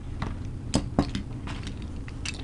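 Metal Beyblade spinning tops being handled and set down on a table, giving a few separate sharp clicks and clinks, the two loudest a little before and around the middle.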